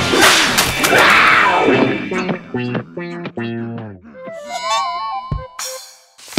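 Cartoon soundtrack: a character's yelling over music, then a descending run of notes, then a short warbling jingle that ends in a brief whoosh.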